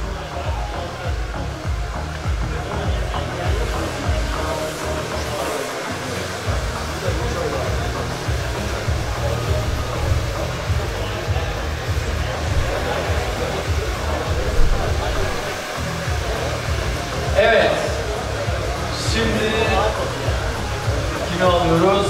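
A hair dryer blowing steadily over background music in a busy barbering hall.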